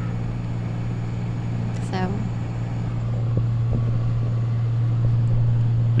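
Steady low hum of engine and road noise inside a moving vehicle's cabin, growing slightly louder over the few seconds.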